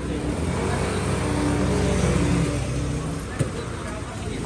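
Motor scooter engine passing close by on the street, rising to a peak about halfway through and then fading. A single sharp click follows shortly after.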